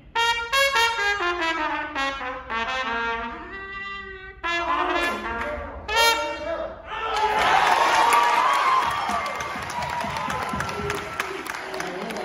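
Solo trumpet playing several short phrases of quick notes, mostly falling in pitch, for about seven seconds. Then audience noise swells and carries on to the end.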